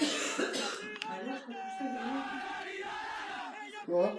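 A group of young men shouting a team war cry together, opening with a loud, rough shout. The sound breaks off abruptly about a second in and again near the end, as one chant gives way to another.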